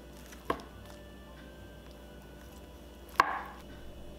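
Chinese cleaver chopping down through a rolled omelette onto a bamboo cutting board: two sharp knocks, a light one about half a second in and a louder one, with a short ring, near the end.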